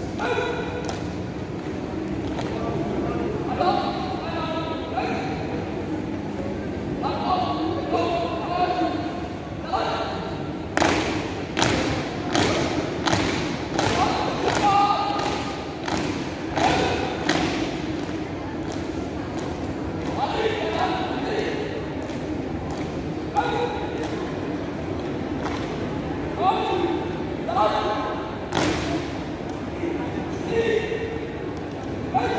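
A marching-drill squad's feet stamping in unison on a hard hall floor, in a steady rhythm of about two stamps a second that is strongest through the middle, with short shouted voices, typical of drill commands, now and then in a large, echoing hall.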